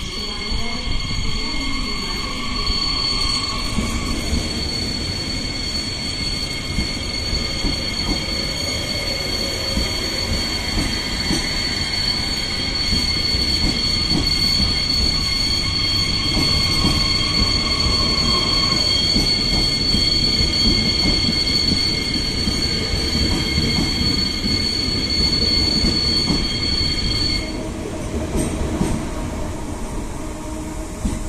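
SNCF B 82500 (Bombardier AGC) multiple unit rolling slowly into the platform: a low rolling rumble under a steady high-pitched squeal of several tones that cuts off suddenly near the end, followed by a lower steady hum.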